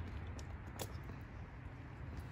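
Faint outdoor background: a low, steady wind rumble on the microphone, with a couple of faint ticks.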